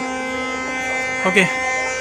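A steady, even buzz made of several pitches sounding together, holding unchanged throughout, with a man's brief 'okay' over it about a second in.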